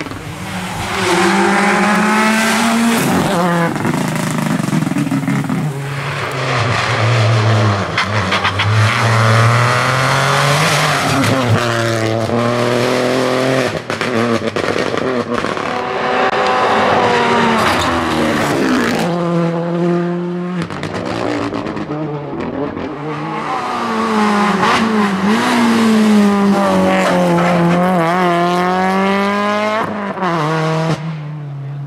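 Rally cars at full speed on a tarmac stage, one after another: engines revving hard and climbing through the gears, the pitch dropping back at each upshift, with sudden jumps in sound as one car gives way to the next.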